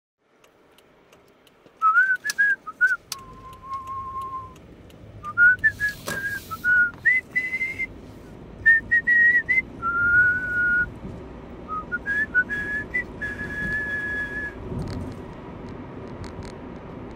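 A person whistling a tune, one clear line of notes that step and slide between short phrases and longer held notes, over the steady road noise of a moving car's cabin. A few sharp clicks sound near the start and about six seconds in.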